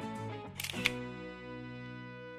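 A DSLR camera's shutter clicking twice in quick succession a little over half a second in, over steady background music.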